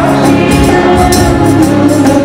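A small women's choir singing a Telugu Christian worship song in sustained, held notes, with instrumental accompaniment underneath.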